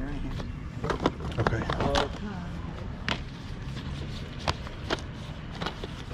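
Plastic video-game cases clacking against each other as a stack is handled and fanned through, giving a few sharp clicks spread over the seconds.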